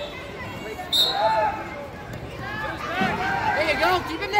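Coaches and spectators shouting and calling out in a gymnasium during a wrestling bout, the voices rising towards the end. A brief sharp sound comes about a second in.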